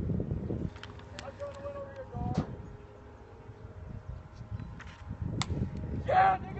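Wind rumbling on the microphone, with faint distant voices and two sharp knocks, about two and five seconds in.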